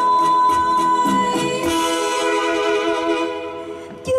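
Live Vietnamese ballad: female singer and electronic keyboard accompaniment, with one long held note that fades out near the end.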